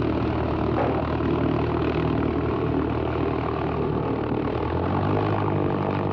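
Ski-equipped bush plane's propeller engine idling steadily, its pitch lifting slightly about five seconds in.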